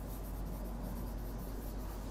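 Faint scratching of a pen writing on an interactive display panel, over a low steady hum.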